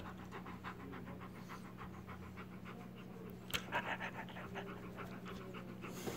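Husky panting softly and quickly, an even run of about seven short breaths a second, with a faint click about halfway through.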